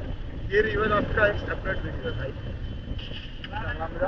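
Mostly speech: people talking in short bursts over a steady low rumble of wind on the microphone.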